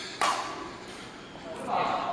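A badminton racket strikes a shuttlecock once in an overhead stroke: a single sharp crack about a quarter of a second in, which rings on briefly in the hall.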